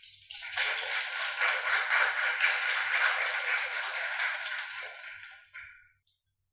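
Audience applauding: a round of clapping that swells within the first second, holds, and dies away near the end.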